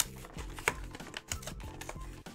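A cardboard trading-card collection box being opened by hand, with a few sharp, irregular clicks and crackles of packaging. A background music track with a steady beat runs underneath.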